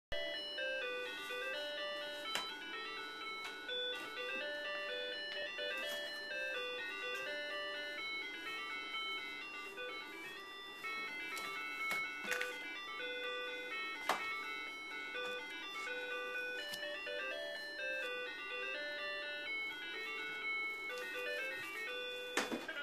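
Electronic toy melody, a simple beeping tune of short stepped notes, playing from a toddler's ride-on toy, with a few sharp knocks from the toy being handled.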